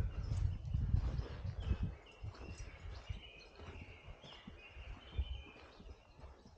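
Birds singing in the surrounding woods, a string of short high chirps and trills. For the first two seconds there is also a low rumble on the microphone, which then fades.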